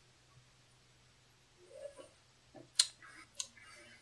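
Faint mouth sounds of someone tasting a mouthful of soda: quiet at first, then a swallow about halfway through, followed by two sharp mouth clicks and soft smacking near the end.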